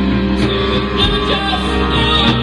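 Rock band playing live: sustained, layered electric guitars over bass, with occasional drum hits.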